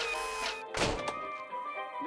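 Cartoon sound effect of a robot arm: a brief hissing whir, then a single thunk just under a second in, over background music.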